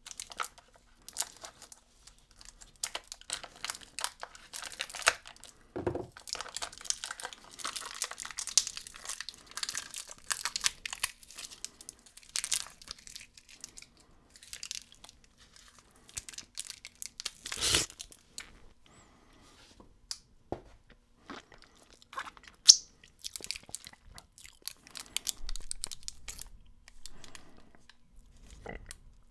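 Thin plastic wrapping crinkling and the sealed lid of a small plastic cup of sherbet powder tearing off, in irregular bursts of crackling through the first half. A single sharp knock a little past halfway, and more crinkling near the end.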